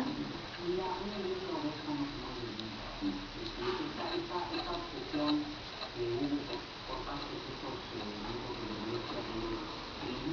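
A faint, indistinct voice murmuring in short broken phrases, well below the level of the main talking.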